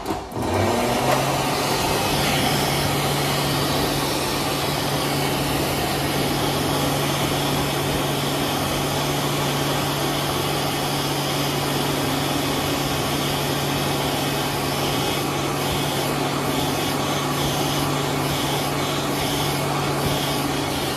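Electric Aire Model R push-button hand dryer starting up and running: its motor spins up in the first second, then gives a steady loud rush of blown air over an even motor hum.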